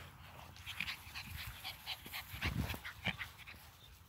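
Bully puppies faintly panting and snuffling as they nose around in the grass, with a soft low thump about two and a half seconds in.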